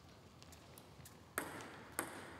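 Table tennis ball struck by a paddle and bouncing on the table as a point begins: two sharp clicks about 0.6 s apart, the first about one and a half seconds in, each with a short hall echo.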